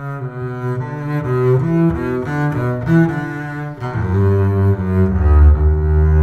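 Solo double bass played with the bow: a quick run of short notes, then from about four seconds in longer, louder low notes held.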